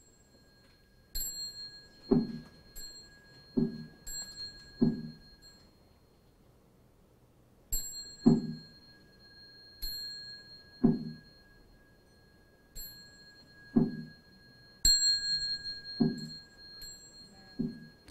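A Buddhist bowl bell (qing) struck and left ringing, three long rings starting about a second in, near eight seconds and near fifteen seconds, with lighter strikes between them. Soft low thuds fall between the rings.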